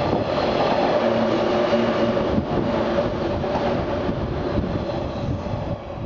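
JR East 183 series electric express train passing along the platform, its wheels and motors running with a steady tone under the rolling noise. The sound eases off near the end as the last cars go by.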